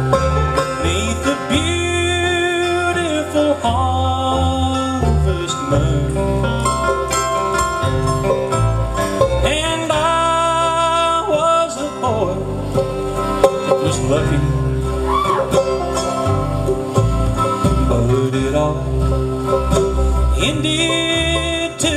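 Bluegrass band with several fiddles, banjo and guitars playing an instrumental passage of a waltz, the fiddles holding long, wavering melody notes over steady low notes.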